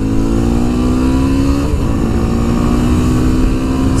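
Yamaha dual-sport motorcycle engine accelerating hard to pass a car, its pitch rising, then an upshift about a second and a half in, after which it pulls on at a lower pitch. A steady wind rumble on the rider's microphone runs underneath.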